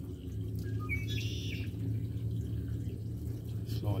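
Steady low electric hum from a small water pump on a homemade drum-based water treatment setup. A bird chirps briefly about a second in.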